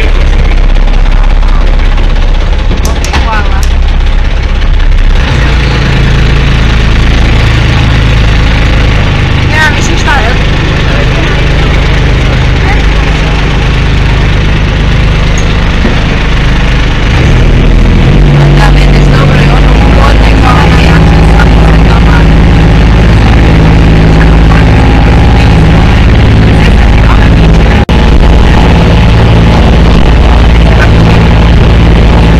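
A small boat's engine running steadily. Its note steps up twice, about five seconds in and again around eighteen seconds, and it is louder after the second step.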